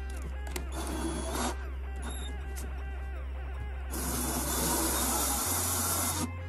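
Background music over a cordless drill spinning a small servo motor's shaft to drive it as a generator. The drill runs briefly about a second in, then again for about two seconds near the end, louder.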